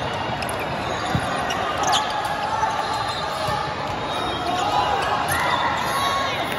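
Volleyball rally in a large, echoing hall: the ball struck sharply about a second in and again about two seconds in, with sneakers squeaking on the court floor. Voices and chatter run throughout.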